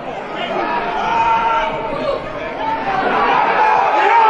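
Football stadium crowd: many voices at once, getting louder about a second in and again near the end.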